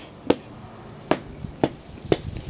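Three sharp knocks of a small hand pick striking the sole of a shoe, knocking off sticky topsoil caked on it.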